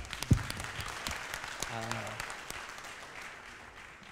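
Audience applauding, strongest at the start and dying away over the few seconds, with a brief voice about two seconds in.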